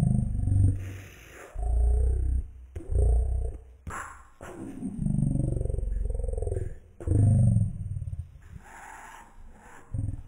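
A series of deep, roar-like bursts, each lasting about half a second to a second and a half, with the pitch bending up and down between them.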